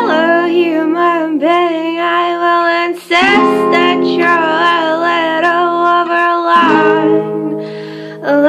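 A woman singing a slow folk song while accompanying herself on acoustic guitar, the guitar chords ringing under the voice and changing twice, about three seconds in and near the end.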